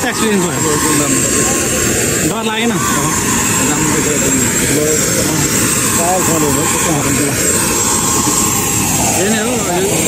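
Steady aircraft turbine engine noise with a thin high whine on the apron, with people's voices over it.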